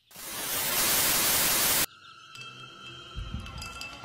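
Loud static white noise that swells up over about half a second and cuts off abruptly just under two seconds in. Quieter steady held tones follow, with a low rumble near the end.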